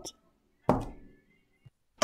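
A single knock of a container against a hard surface about two-thirds of a second in, followed by a short, faint ring.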